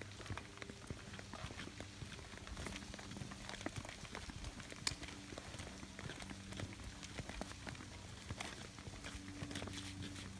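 Footsteps of several people in flip-flops and sandals slapping and scuffing on a flagstone path, an irregular patter of clicks over a faint steady hum.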